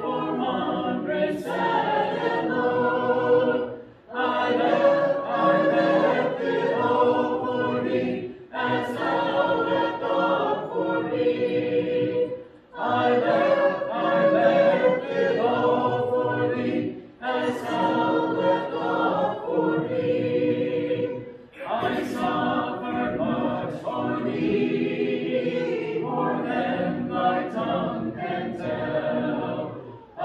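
Congregation singing a hymn a cappella, unaccompanied voices led by a song leader. It comes in phrases of about four seconds with short breath pauses between the lines.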